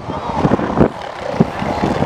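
Elephant seal bulls sparring, with deep, pulsed bellowing over steady wind and surf.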